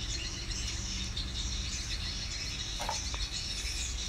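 Steady high-pitched insect chirping over a low, steady rumble, with one faint, brief sound about three seconds in.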